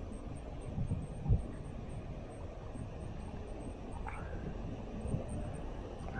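Wind buffeting an action camera's microphone, a steady low rumble with a brief louder thump about a second in.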